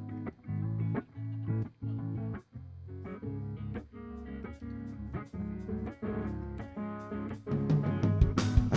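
Electric guitar playing a picked riff of single notes and chords, the notes coming faster in the second half.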